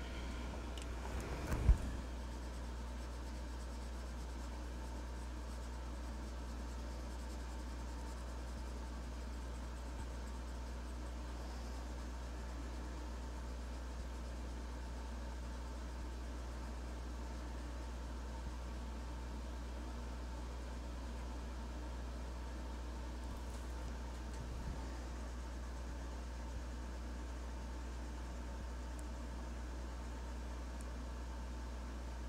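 Faint scratching of an alcohol marker's nib on paper over a steady low hum. A few clicks and one sharp click come in the first two seconds as the marker is handled.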